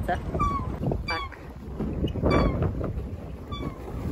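Pedal boat's pedal-and-paddle-wheel mechanism squeaking with each turn: a short high squeak about once a second, over wind rumbling on the microphone.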